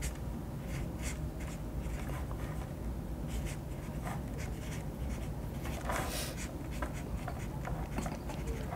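Felt-tip marker pen writing by hand on a small piece of paper: short, irregular scratching strokes with brief pauses between them.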